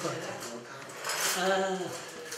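Glassware and dishes clinking as they are handled at a kitchen counter, with a voice heard briefly in the background past the middle.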